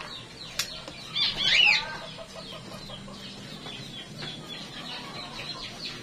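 Soft rustling of shredded squash and carrot tossed by a gloved hand in a stainless steel bowl. About a second in, a short, loud bird call rises and falls in pitch over it.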